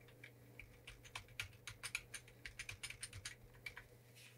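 Computer keyboard keys tapped in a quick, uneven run of faint clicks, several a second, over a low steady hum.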